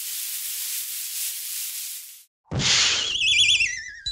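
Cartoon sound effects: an even hiss as the snake slides along for about two seconds, then a sudden hit about two and a half seconds in, followed by a wobbling whistle that warbles downward, the dizzy effect for a dazed character.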